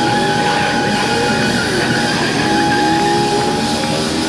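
Live band music: a single high note held steady for several seconds while lower notes slide up and down beneath it, over saxophone, electric guitars and drums.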